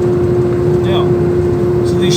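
Iveco truck's engine and drivetrain running steadily, heard from inside the cab, a low rumble with one constant hum that does not change pitch.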